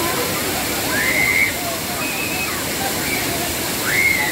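Waterfall pouring steadily onto rock, a continuous rushing of water. Over it, people's voices call out in short high cries about three times.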